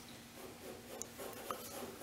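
Drawing strokes: a hand-held drawing tool rubbing and scratching across a large upright drawing surface, with two small ticks about a second and a second and a half in.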